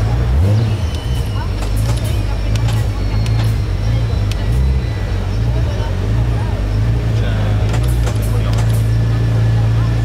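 Radical RXC Turbo 500's 3.5-litre twin-turbo Ford EcoBoost V6 idling steadily, with a few short clicks near the end.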